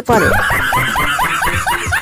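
High-pitched laughter: a quick run of short giggling bursts, each rising in pitch, about four a second.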